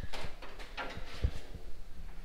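Steel bonnet of an XY Falcon being lowered by hand, giving a series of light clicks and knocks with one sharper knock about a second in. It is coming down onto a Procharger supercharger that is too tall and fouls it.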